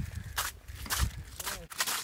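Footsteps on snow-covered river ice: several short steps in quick, uneven succession.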